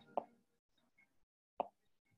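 Two brief, faint clicks in near-quiet: one just after the start and a sharper, shorter one about a second and a half later.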